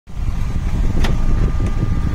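Low, steady rumble of a running motor scooter and street traffic, with a light click about halfway through.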